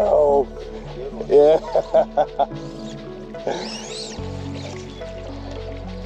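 Background music with steady held chords that change about four seconds in. A person's voice comes over it in short bursts, with a quick run of brief sounds in the first half.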